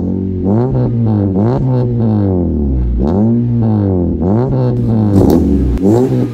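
A 2018 Honda Civic's engine revved again and again through an aftermarket full exhaust system with triple tips, the note rising and falling with each blip of the throttle.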